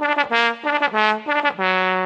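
Brass music: a short phrase of about five separate notes, then a lower note held from near the end.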